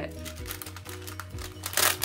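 Background music, with a clear plastic sticker sheet crinkling as it is lifted and handled, loudest near the end.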